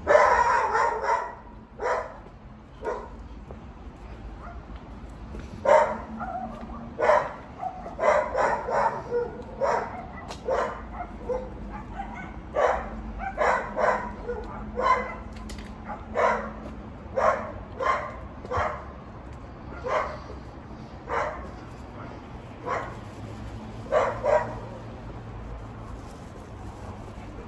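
A dog barking: a loud burst of barks at the start, then a long run of single barks about once a second.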